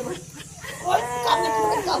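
One drawn-out, wavering bleat-like cry lasting about a second, starting just over half a second in after a brief lull.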